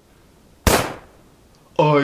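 A single sharp gunshot-like bang, dying away within about half a second.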